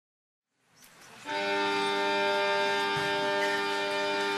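Silent at first, then about a second in the sound fades up to a fiddle holding one long, steady bowed chord over acoustic guitar: the instrumental opening of a slow folk song.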